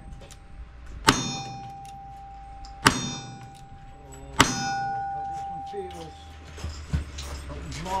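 Single-action revolver firing three shots about a second and a half to two seconds apart, each followed by the ringing of a struck steel target.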